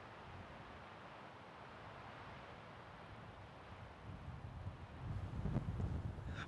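Faint outdoor neighborhood ambience (nat sound): a steady, soft hiss of air, with a low rumble building over the last two seconds.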